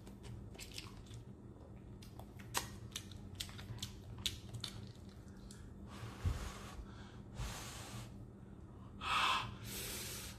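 Quiet close-up chewing of soft instant ramen noodles, with small wet mouth clicks, then heavy breaths blown out through the mouth near the end against the spicy heat.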